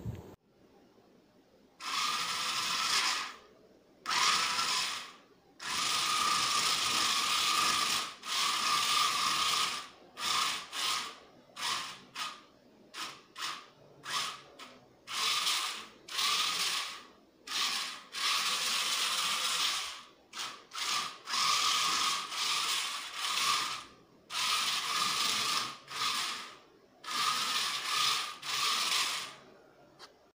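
Small geared DC motors driving the four wheels of a Bluetooth-controlled model wheelchair, whining in many short bursts as it starts and stops again and again.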